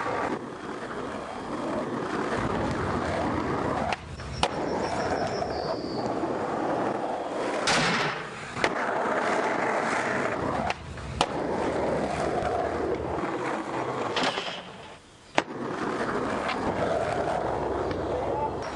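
Skateboard wheels rolling on asphalt: a steady rolling rumble with a few sharp clacks along the way.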